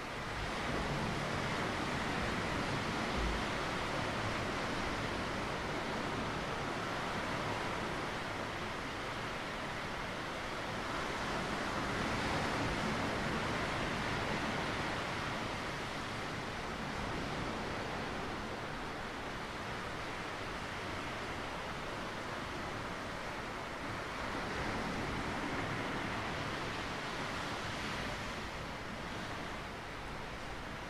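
Sea surf washing onto a rocky shore: a steady rush of water that swells louder three times, about a second in, around the middle and a few seconds before the end.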